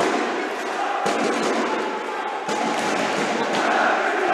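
Spectators in an indoor roller hockey rink making a steady din of many voices, with a few faint clicks of sticks and ball on the rink floor.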